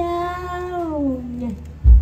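A performer's voice drawing out 'phi chao' in one long, wailing sung-speech note that holds and then slides down in pitch over about a second and a half, in comic likay style. A short, loud, low thump comes near the end.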